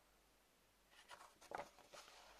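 Paper CD booklet being handled and folded over: quiet at first, then a few soft, crisp paper rustles starting about a second in.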